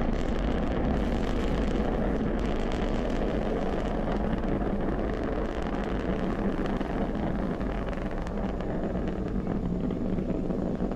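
Falcon 9 first stage's nine Merlin engines during ascent, a steady low roar of noise that eases off slightly near the end.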